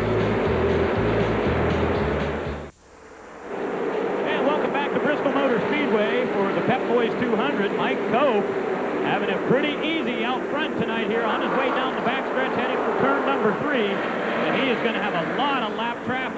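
Music with a pulsing bass line for the first few seconds, cut off abruptly. Then the V8 engines of stock cars racing around a half-mile oval, their pitch rising and falling as the cars pass.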